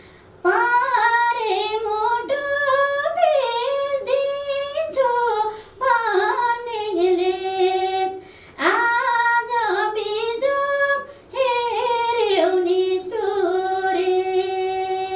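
A woman singing unaccompanied, in several phrases of ornamented, wavering notes with brief breaths between them, ending on a long held note.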